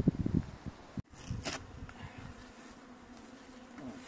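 A swarm of honeybees buzzing in the air, a steady hum. A low rumbling on the microphone fills the first second, then stops abruptly at a cut.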